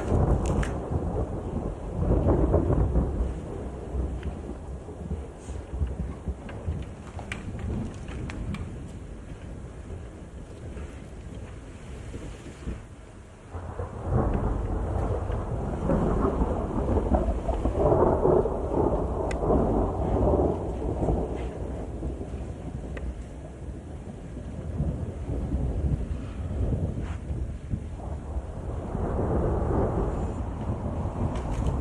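A thunderstorm: steady rain with thunder rumbling, swelling loudest about two seconds in, again through the middle from about 14 to 21 seconds, and once more near the end.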